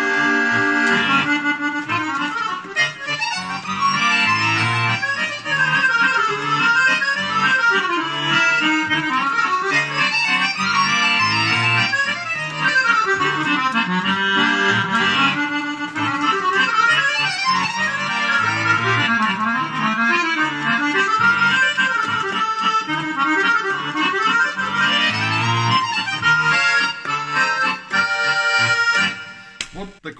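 Solo Roland digital button accordion (bayan) played continuously, a warm-up run of melody with bass and chords, which stops near the end.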